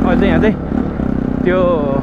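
Single-cylinder engine of a Bajaj Pulsar NS 200 motorcycle running at a steady cruising speed while riding. A person's voice is louder over it.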